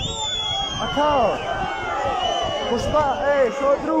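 Crowd of spectators shouting and calling out over one another around an MMA ring, with one long high call near the start that slowly falls in pitch.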